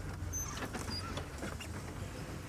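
Low steady hum of a safari game-drive vehicle's engine idling, with a few short, faint high chirps in the first second.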